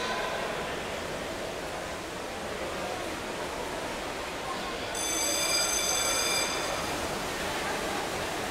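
Steady noisy wash of an indoor swimming pool during an underwater hockey match. About five seconds in, a steady buzzer-like tone sounds for about a second and a half.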